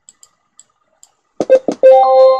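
A few faint clicks, then about one and a half seconds in a loud, short musical chime: four quick struck notes, the last one held and ringing.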